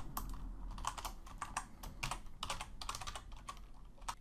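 Typing on a computer keyboard: an irregular run of quick keystroke clicks.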